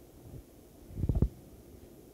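Handheld microphone handling noise: a short, low rumbling bump about a second in, from the microphone being moved in the hand.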